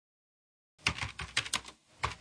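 Computer keyboard typing: a quick run of keystrokes that starts about a second in, with a brief pause just before the end.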